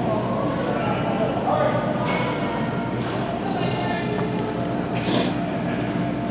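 Indoor ice rink ambience: indistinct voices of spectators and players over a steady hum of the arena, with a brief scrape about five seconds in.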